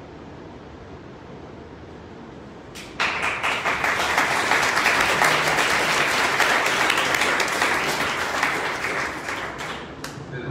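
Audience applause breaking out suddenly about three seconds in: a dense crackle of many hands clapping, easing slightly near the end.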